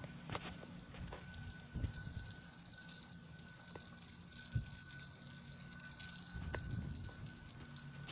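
Footsteps on a concrete walkway, a few irregular steps over a faint steady background hum.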